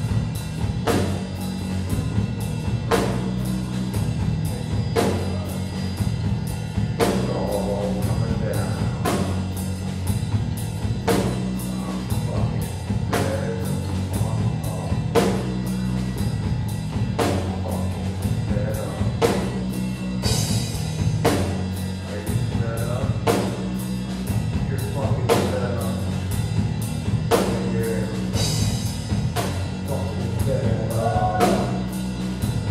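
Live metal punk band playing: distorted electric guitar and bass guitar over a drum kit. The drums keep a steady beat with a heavy accent about every two seconds, and the bass holds low notes underneath.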